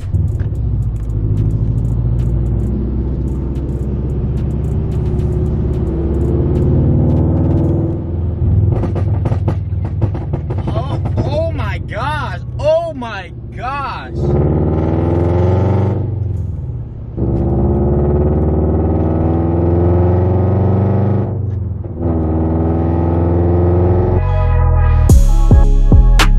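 Scion FR-S flat-four engine through a Tomei titanium exhaust, heard inside the cabin, accelerating through the gears: the revs climb, then drop sharply at upshifts about 14, 17 and 22 seconds in.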